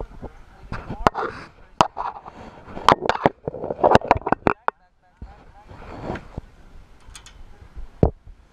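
Sharp metallic clicks and knocks of carabiners and harness hardware being handled and clipped right next to the microphone, with rustling of straps and rope; the clicks come thick and fast for the first half and then thin out.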